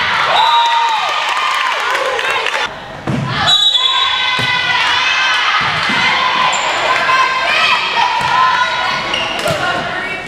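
Volleyball rally on a gymnasium court: the ball being struck, and voices calling and shouting.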